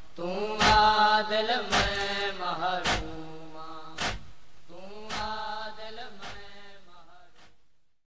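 Noha lament: voices chanting a drawn-out refrain line over rhythmic chest-beating (matam), one sharp strike a little more than once a second. The recording fades out to silence near the end.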